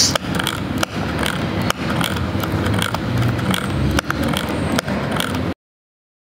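A toy saw made from a notched plastic coffee stirrer scrapes up and down against a piece of wood as a wire crank is turned, with a sharp click now and then. The sound cuts off suddenly near the end.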